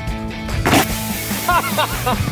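Butane-pressurised Coke bottle rocket jetting out its soda with a short spraying hiss about two-thirds of a second in, after it hits the ground, over background music.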